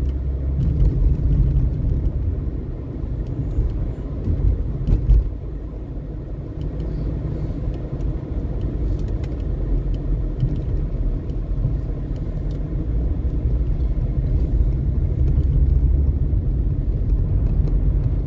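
Car driving, heard from inside the cabin: a steady low rumble of engine and road noise, with a brief louder swell about five seconds in.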